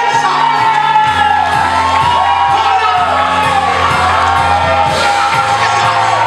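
Live worship music with a steady beat and bass, a man singing loudly into a microphone over it, and the congregation whooping and cheering.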